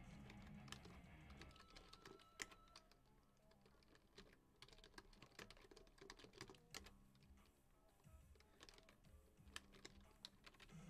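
Faint, irregular clicking of computer keyboard keys being typed in quick runs, over quiet background music.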